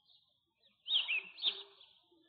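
A bird chirping: a short run of quick, high chirps about a second in, lasting under a second.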